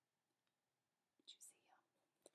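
Near silence: room tone, with one faint short breathy hiss a little past the middle.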